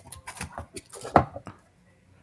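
A boxed effects pedal being picked up and handled: scattered light clicks and knocks of packaging and casing, the loudest about a second in.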